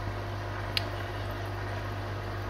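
Small internal aquarium filter pump, rated 300 litres per hour, running underwater: a steady low hum with water churning, stirring up sediment. A single small click about three-quarters of a second in.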